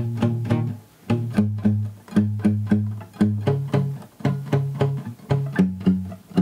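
Nylon-string classical guitar with a capo at the first fret, playing single bass notes picked with the fingernail in down strokes at about four a second. The bass note changes a few times as the chords move.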